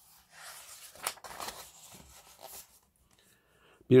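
Soft rustling for about two and a half seconds, with one sharper crackle about a second in. Near silence follows before the narration resumes.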